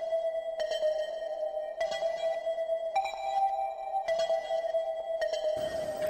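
Background score of a TV drama: a steady held synth drone with soft higher chords that change about every second.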